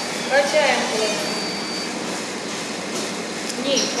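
Steady hiss of room noise with faint voices talking in the background, and a woman starting to speak near the end.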